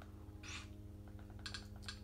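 Faint clicks of buttons being pressed to step through an on-screen menu, several of them near the end, over a low steady hum.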